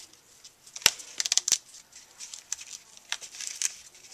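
Grosgrain ribbon being looped and pressed by hand onto sticky adhesive strip on a cardstock cone: soft rustling and crinkling of paper and ribbon, with a few sharp clicks between about one and one and a half seconds in.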